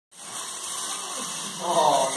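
Small electric drive motors of a hobby robot whirring over a steady hiss. About one and a half seconds in, people's voices start calling out.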